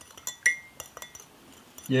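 A metal teaspoon stirring sugar into coffee in a ceramic mug, clinking lightly against the side a few times. The loudest clink, about half a second in, rings briefly.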